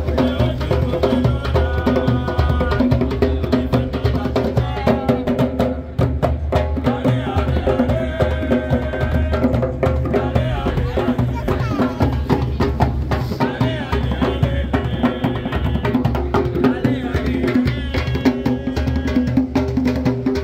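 Djembe hand drums played live in a steady, driving rhythm by a small group of street drummers, with a voice heard over the drumming.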